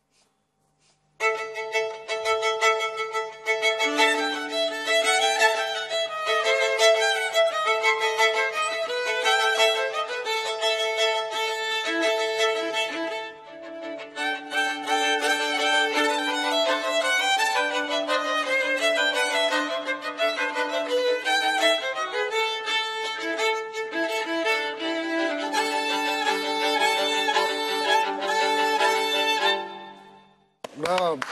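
Two violins playing a duet. The music starts about a second in, eases briefly about halfway through, and stops just at the end.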